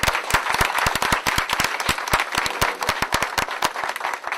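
Audience applauding: many hands clapping in a dense, irregular patter after a speech.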